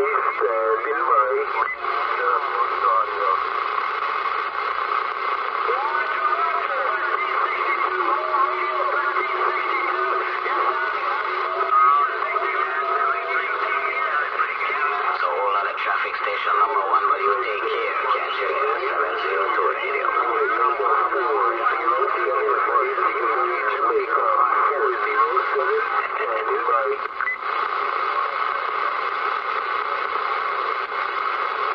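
Uniden Bearcat 980SSB CB radio receiving long-distance stations on channel 38 lower sideband (27.385 MHz): continuous single-sideband voices with band noise, thin and narrow in tone, from the radio's speaker.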